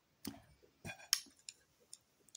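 Close-miked mouth sounds: about five short, wet clicks and smacks of lips and tongue in two seconds, as after a drink or between bites.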